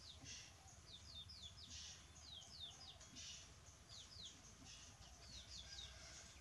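Faint birdsong: short, quick downward-sliding chirps repeated in groups of two or three, over a low steady hum.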